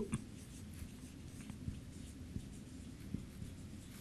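Red marker pen writing on a whiteboard: faint, scattered scratching strokes as characters are written, over a low room hum.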